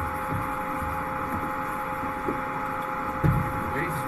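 Steady background hiss with a faint hum of two steady tones, the room noise of the capsule cabin, with a few faint low murmurs of voices.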